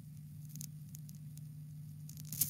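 Faint steady low hum with light hiss and crackle: the background noise of a voice-chat audio stream in a gap between speakers.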